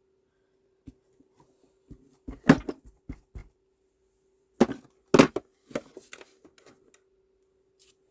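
Irregular knocks and taps of a clear acrylic stamp block against an ink pad and paper on a tabletop during rubber stamping, the loudest about two and a half seconds in and again around five seconds in.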